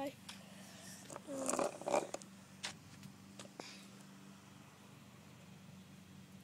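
A few faint sharp clicks and rustles from a phone being handled and moved while filming, over a faint steady low hum.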